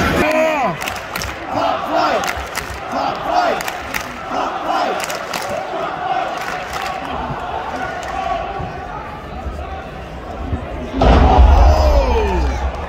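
Arena crowd at a live wrestling match, with individual fans yelling and shouting over the general crowd noise. The crowd sound swells again about eleven seconds in, with a deep rumble and more yells.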